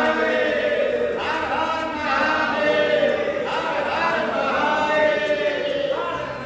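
A group of men chanting together in unison, a devotional chant sung in short repeated phrases that restart about once a second.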